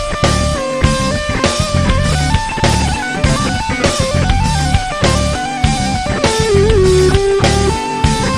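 Electric guitar playing a single-note funk rock lead in D over a backing track with drums. About six seconds in the guitar holds a wavering, bent note.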